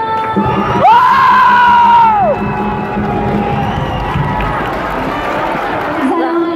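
A crowd cheering and shouting, swelling about half a second in, with one loud whoop that rises, holds and falls away over about a second and a half.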